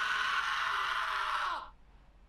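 A young man's long, held scream of pain from an anime, voicing the character Sasuke; it falls in pitch and dies away near the end.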